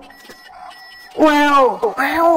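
Faint, thin electronic beeping tones for about the first second, then a woman's voice calls out loudly.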